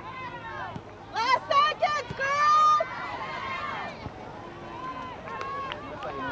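Spectators and players shouting and calling out across an outdoor soccer field. A loud burst of shouts, including one long held call, comes between about one and three seconds in.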